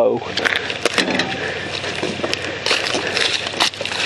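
Close rustling and crackling with many sharp clicks: handling noise from the camera being moved by hand over the mower.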